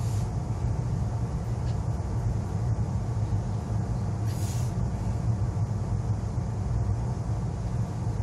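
Steady low hum inside the cabin of an ITX-Saemaeul electric multiple unit standing at a station platform, with no wheel or rail noise, and a brief hiss about four seconds in.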